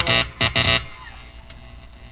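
Two short bursts of buzzing amplified sound from the band's stage equipment, about half a second apart, followed by a low steady hum. They come amid electrical problems with the sound system.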